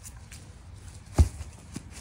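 A soccer ball kicked on a grass lawn: a single dull thump a little over a second in.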